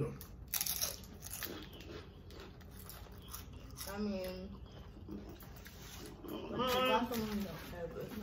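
Tortilla chips crunching as they are bitten and chewed. Brief voice sounds come about four seconds in and again near the end.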